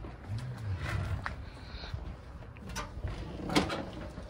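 A travel trailer's entry door being unlatched and pulled open, then a few separate knocks and clicks as people step up the entry steps and inside.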